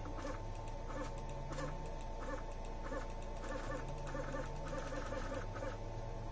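Stepper motors of a LowRider2 CNC router driving the gantry along its axis, a pulsing buzz about three times every two seconds over a steady high whine.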